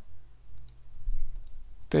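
A few computer mouse clicks, most in the second half, over a low steady hum.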